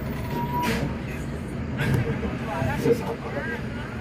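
Steady low rumble of a bus's engine and road noise heard from inside the cabin while driving slowly. A voice speaks a few indistinct words in the second half.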